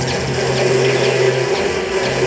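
Live noise music from a keyboard, a guitar and a floor full of effects pedals and electronics: a dense, unbroken wall of noise over a steady low drone. The drone drops out briefly about one and a half seconds in.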